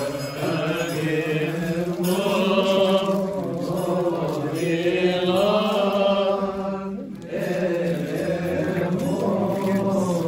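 Monks chanting a Coptic liturgical hymn together in a slow melody over a steady low held note; the chant thins to a short pause about seven seconds in, then resumes.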